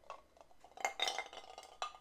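Ice cubes clinking against the glass of whiskey on the rocks as it is tipped for a sip and brought down. There are a few faint, short clinks about a second in and one more near the end.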